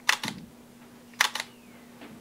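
Shutter of a Panasonic Lumix G5 mirrorless camera firing twice, about a second apart, each release a quick double click.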